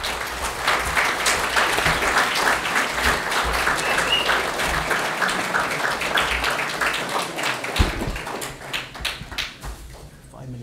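Audience applauding, many people clapping at once, the clapping dying away over the last few seconds.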